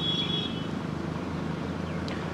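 Petrol poured from a plastic measuring cup into a motorcycle's metal fuel tank, over a steady low engine-like hum; a thin high tone fades out about half a second in.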